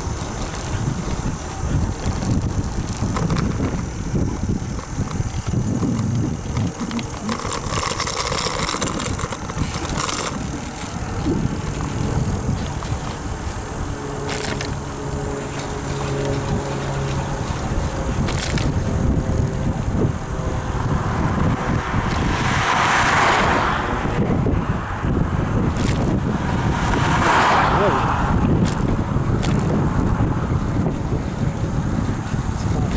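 Wind rushing over the microphone of a camera on a moving bicycle, a steady low rumble with louder rushes about two-thirds of the way in and again near the end.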